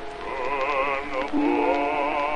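Acoustic-era 1920 recording of a baritone singing with orchestra. He holds a note with a wide vibrato, breaks off briefly just past a second in, then starts a new phrase over sustained accompaniment.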